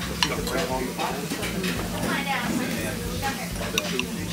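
Cutlery handling at a dinner plate: a spoon and fork scraping and clicking against a ceramic plate and a small stainless-steel sauce ramekin, with a few sharp clinks over a steady low hum.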